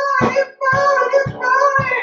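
A woman singing solo into a microphone in long held notes, over band accompaniment with a steady low beat.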